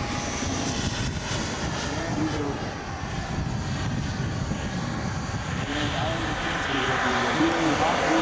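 Turbine-powered model jet (a Jet Legend F-16) running as a steady rush with a thin high whine, heard across an open airfield, with people talking in the background.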